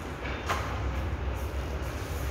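A low, steady rumble with one sharp tap about half a second in.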